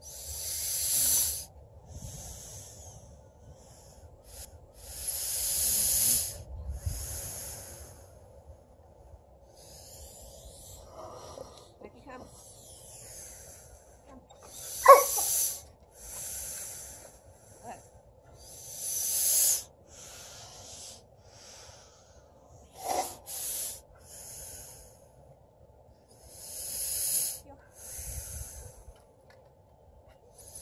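A goat snorting and breathing close to the microphone: a dozen or so hissing breaths about a second long, coming every second or two. A sharp click about halfway through is the loudest sound, and there is another a little later.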